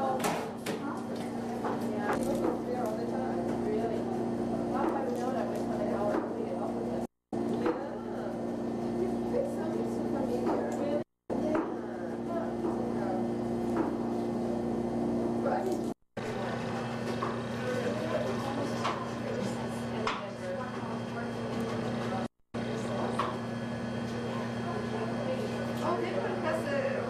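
Knife chopping food on a cutting board in irregular knocks, over a steady low hum.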